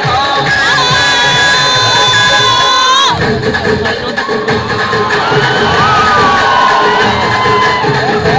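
Loud recorded dance music with an audience cheering and shouting over it. A long held note breaks off about three seconds in, and the music switches abruptly to a different track with a steady beat, as in a dance medley.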